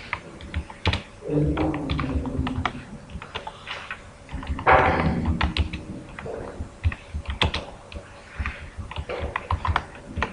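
Computer keyboard being typed on: irregular runs of keystroke clicks as code is entered. A low voice is heard briefly about a second in and again near the middle.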